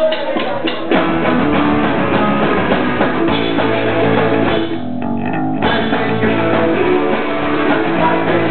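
Live pop-punk band playing the instrumental opening of a song on electric guitars, bass guitar and drum kit. The full band comes in about a second in.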